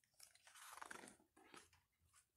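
Faint paper rustle of a hardcover picture book's page being turned, about half a second in, with a couple of small ticks around it.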